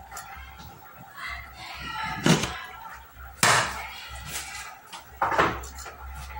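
Kitchen items being handled on a countertop: three sharp knocks and clatters, about two, three and a half and five seconds in.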